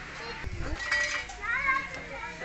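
Women and children chattering over one another in high voices, with a brief clink about a second in.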